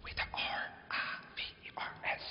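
A voice whispering a few short, breathy phrases.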